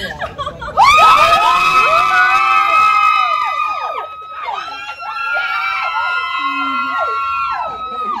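Several people screaming with excitement at a marriage proposal: long, high-pitched overlapping screams that break out about a second in, pause briefly near the middle and then carry on.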